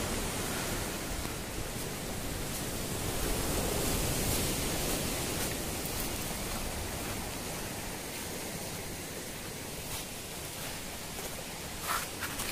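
Sea surf breaking and washing on a pebble beach: a steady rushing noise that swells a little and then eases.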